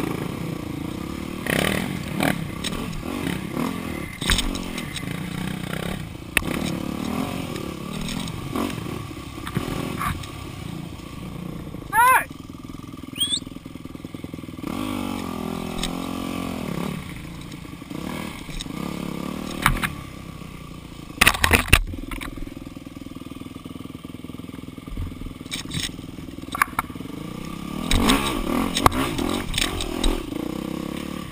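Dirt bike engines running slowly on a tight woods trail, the throttle opening and closing so the engine note rises and falls, with a few sharp clattering knocks from the bikes about two-thirds of the way through.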